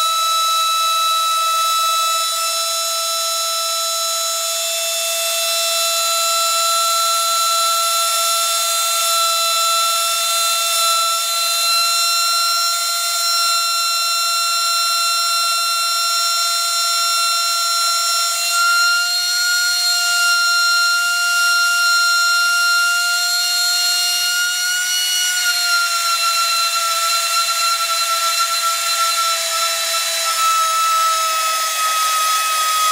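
Small vacuum-cleaner motor pushed to its limit, spinning above 80,000 RPM with a steady high-pitched whine. The pitch creeps up in the second half and dips back a little near the end.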